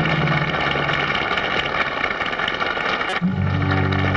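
Live band playing a passage led by a strummed banjo, with a dense wash of cymbals and guitars over sustained low notes; about three seconds in, a new chord with a deeper bass note comes in.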